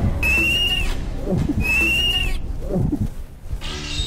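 A high, whistle-like tone sounds twice, each held for under a second about a second and a half apart, over a low rumble. It is an edited-in comic sound effect and grows quieter near the end.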